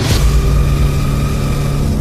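Trailer score: a sudden deep hit right at the start opens into a low rumble beneath a steady droning note.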